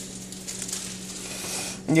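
Quiet room noise: a steady low hum under faint, light crackling.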